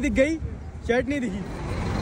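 City street traffic rumble, a steady low noise of passing road vehicles, with two short bits of speech over it.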